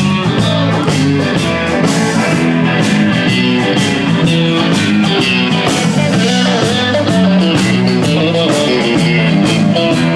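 Live rock band playing an instrumental passage at full volume: amplified electric guitars over a drum kit keeping a steady beat, with no vocals.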